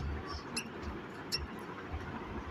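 Dry-erase marker writing on a whiteboard, giving a few short, faint squeaks as the letters are drawn.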